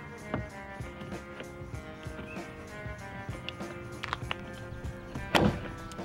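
Outside door handle of an F-series MINI Cooper being pulled out and slid back: a few light clicks, then one sharp click about five seconds in as the handle releases from its carrier. Background music plays throughout.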